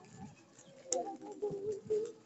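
Voices of a walking funeral procession. Held, wavering notes come in about halfway through, with a few sharp clicks.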